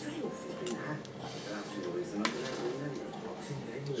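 Indistinct voices talking in the background, with a single sharp click a little over two seconds in.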